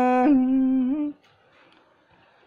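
A voice holds a long sung note in traditional Thái singing. The pitch wavers slightly before the note ends about a second in, and near silence follows.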